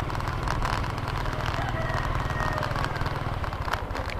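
Engine of a moving road vehicle running steadily, with an even low pulse.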